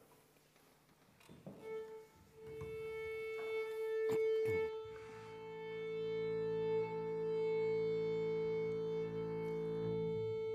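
Small chamber ensemble of violin, double bass and wind and brass tuning: from about a second and a half in, one steady held note near concert A sounds unbroken, a few short string strokes come through it, and from about halfway lower instruments join on long sustained notes.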